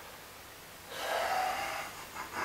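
A man's loud breath out, about a second long, starting halfway through.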